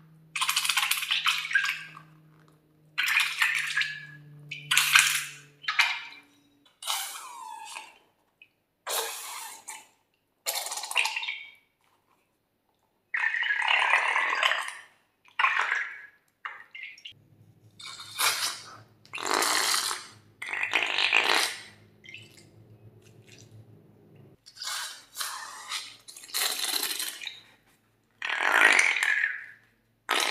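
Slime squirting out of the necks of squeezed balloons into a glass dish: about a dozen squelching bursts, each a second or two long, with short pauses between.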